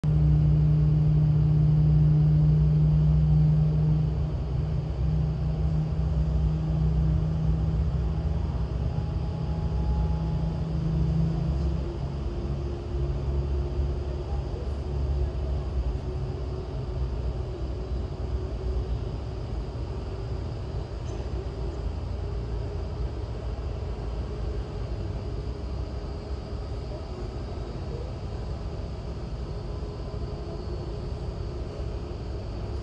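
Airbus A320neo jet engines running at taxi power: a steady low rumble, loudest in the first few seconds and then easing off, with a faint whine slowly rising in pitch.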